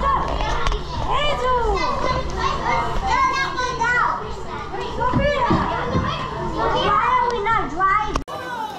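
A group of children shouting, squealing and chattering over one another while they play, their voices rising and falling in pitch and overlapping.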